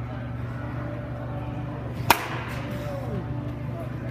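A wooden baseball bat striking a pitched ball once, a single sharp crack about two seconds in.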